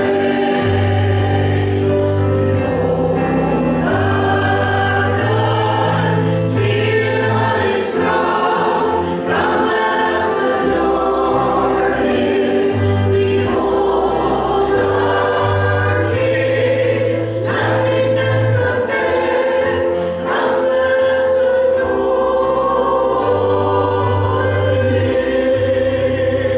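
Live church worship singing: a few voices sing a worship song over instrumental accompaniment, with held bass notes that change every second or two.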